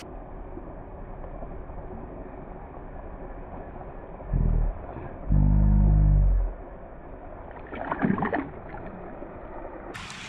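Muffled water splashing as a small largemouth bass is released by hand in shallow pond water: a short splash just past four seconds, then a longer, louder one around five to six and a half seconds as the fish kicks free. The whole passage sounds dull, with no high sound in it.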